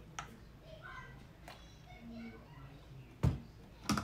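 Someone drinking from a plastic water bottle and handling its plastic flip-top lid: a small click early on, then two sharp plastic knocks near the end, the loudest sounds.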